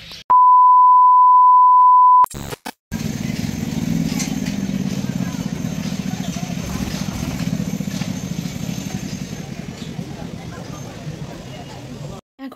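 A loud, steady single-pitch beep tone lasting about two seconds, which cuts off suddenly. After a brief gap, the steady hubbub of a crowd at a busy fair: many voices chattering with general bustle.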